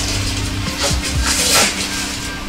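Dry corn husks rustling and crackling in a few short bursts as an ear of corn is husked by hand, over soft background music with steady held notes.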